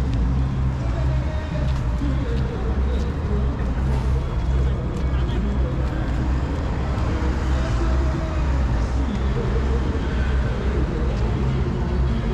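Busy city street ambience: a steady low rumble of road traffic with passers-by talking nearby.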